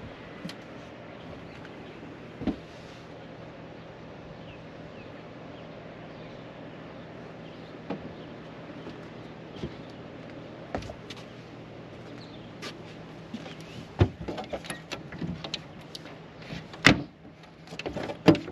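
A steady low mechanical hum under a few isolated clicks and knocks. In the last few seconds comes a run of knocks and rattles as a hand works the flush latch of a deck hatch on a boat.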